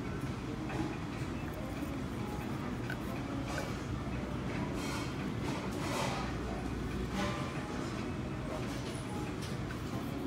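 Restaurant background noise: a steady low hum with indistinct voices and a few short, sharp clatters.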